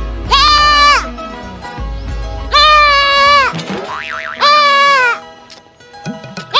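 A young goat bleating three times, each call a loud, steady-pitched cry of well under a second, with background music underneath.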